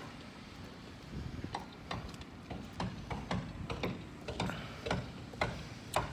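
Footsteps at a walking pace, about two a second, each a light click over a dull thud, starting about a second in.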